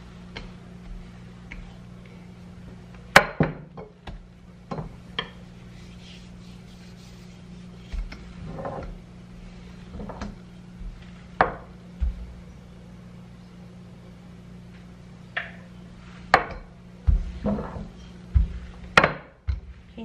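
A rolling pin with wooden handles rolling out bread dough on a granite countertop, with scattered sharp knocks and clicks as the pin and its handles bump the stone, several close together near the end.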